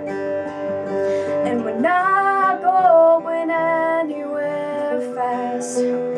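Two acoustic guitars strummed and picked together, with a woman's voice singing a held, wavering note from about two seconds in.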